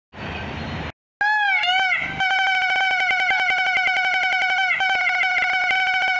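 A short burst of noise, a brief gap, then an electronic tone that wobbles in pitch for about a second before holding steady, chopped by a fast run of clicks.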